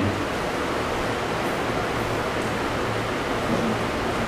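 Steady hiss of background noise with a faint low hum underneath, between sentences of a talk.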